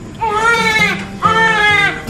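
Newborn baby crying in the first moments after birth: two long, high-pitched cries, one straight after the other.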